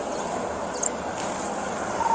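Steady outdoor background noise picked up by a police body camera's microphone, a hiss and hum like nearby traffic or an idling vehicle, with one brief high clink a little under a second in.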